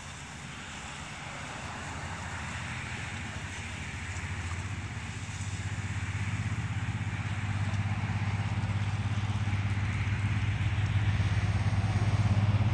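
A low engine drone that grows steadily louder, over the hiss of a lawn sprinkler's spray.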